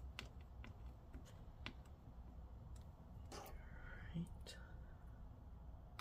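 Faint, scattered small clicks of a Torx T8 screwdriver turning the display hinge screws of a MacBook Air laptop, with a soft breathy sound about three and a half seconds in.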